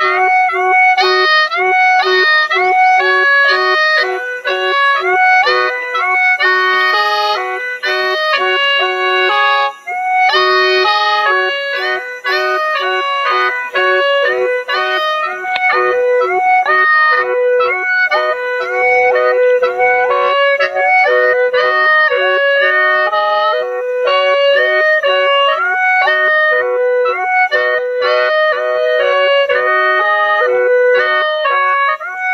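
Lahu naw, a gourd mouth organ with bamboo pipes, played solo: several pipes sound together, a low note held almost throughout under a quick-moving melody, with a brief break about ten seconds in.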